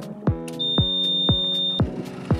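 Background music with a steady beat, over which a single high electronic beep is held for about a second in the middle.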